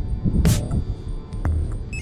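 Coros GPS running watch beeping a quick run of short tones rising in pitch near the end, as its run activity is started. Under it is background music with a steady low beat, and a brief noisy rush comes about half a second in.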